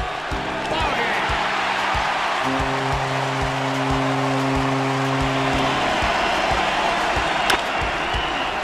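Background music with a steady beat and a held chord through the middle, over the noise of a stadium crowd cheering.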